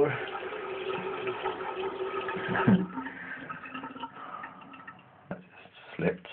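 Water running from a bathroom tap into a sink, a steady rushing that stops with a knock a little under three seconds in. A quieter stretch with a single click follows.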